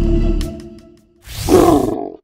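Background music fading out, then a short animal roar sound effect that swells to its loudest about a second and a half in.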